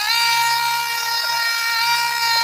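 Small cordless power tool's motor spinning up with a quick rising whine, then running at a steady high-pitched whine while sanding the brake caliper with 80 grit.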